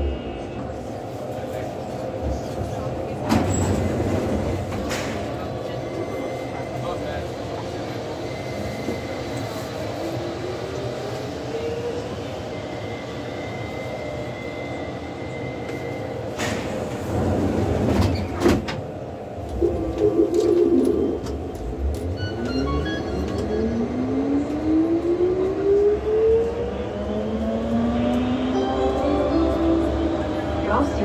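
Driverless Turin metro train (VAL 208, rubber-tyred) heard from the front cab window, standing at a station with a steady hum. A thin high tone sounds for a few seconds around the middle, then come a few loud knocks. Its traction motors then whine steadily upward in pitch as it pulls away into the tunnel.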